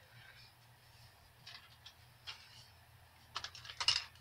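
Faint handling of a Lancer Tactical airsoft rifle: a few light clicks and rustles, then a quick cluster of sharp plastic clicks near the end as the rifle is picked up and brought into position.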